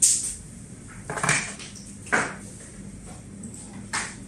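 Clinks and clatter of small hard objects being handled: four short bursts roughly a second apart, the first the loudest.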